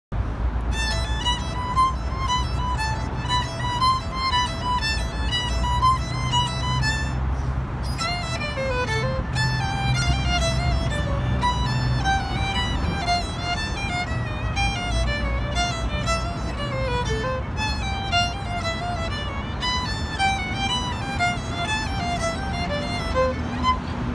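Solo violin playing a melody, note after note with a brief break about eight seconds in, over a low steady rumble.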